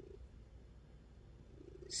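Orange-and-white domestic cat purring faintly, close by.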